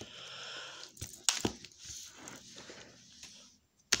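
Plastic wrestling action figures handled and moved by hand: a rustle in the first second, a few sharp clicks about a second in, then faint rubbing.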